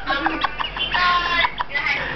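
High-pitched voice cackling in short notes, then holding one long squealing note of about a second, followed by more short notes.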